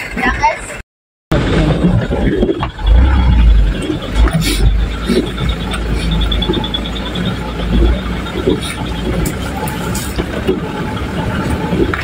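Truck driving over a rough road: a heavy low rumble from the engine and the road, with scattered knocks and rattles from the bouncing cab. The sound drops out briefly about a second in.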